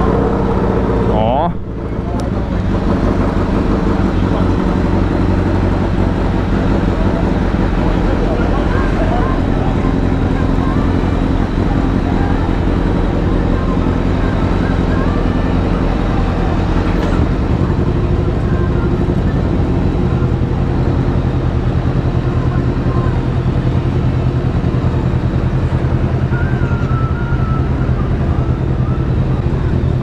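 Several motorcycle engines idling together, a steady low running sound that gets a little louder about twenty seconds in.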